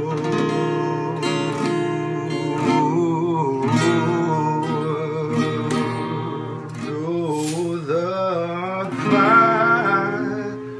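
Ibanez acoustic guitar strummed and picked, chords ringing steadily. In the second half a man's voice sings long, wavering held notes over it, loudest near the end.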